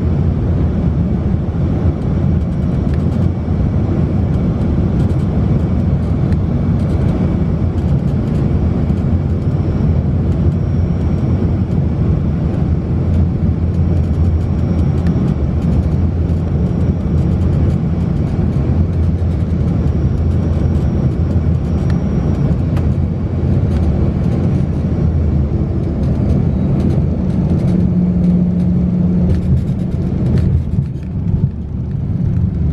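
Steady, loud airliner cabin noise, the engines and rushing air, during the final approach and landing, heard from inside the cabin. A deeper steady hum joins near the end.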